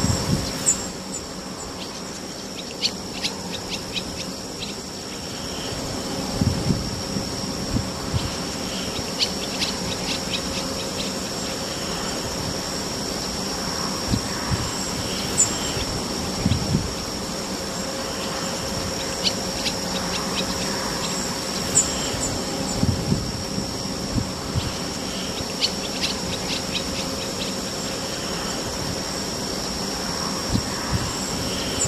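An ambient soundscape of steady high-pitched insect-like droning over a low hum, broken every few seconds by quick runs of clicks and short chirps, with a few soft low thumps.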